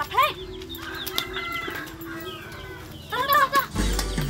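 A chicken calling, with a drawn-out pitched call about a second in, typical of a rooster crowing.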